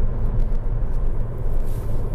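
Steady, mostly low-pitched road and engine noise inside the cabin of a 2020 Fiat Egea sedan with a 1.6 Multijet diesel, cruising at a constant speed.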